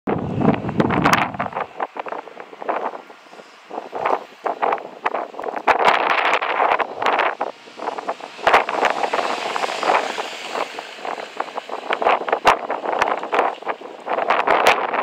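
Wind buffeting an outdoor microphone in irregular gusts, with sharp crackling pops, and a low rumble in the first two seconds.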